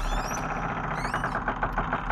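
Horror sound effects: a low rumble under a fast, even clattering, with short high squeals near the start and again about a second in.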